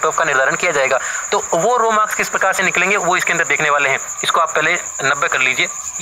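A man's voice speaking Hindi in an explanatory monologue, with a steady high-pitched whine underneath.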